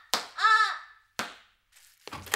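Two sharp smacks, one at the start and one just past a second in, with a short pained cry of "ah!" between them: a palm being struck as punishment and the person yelping at the blow.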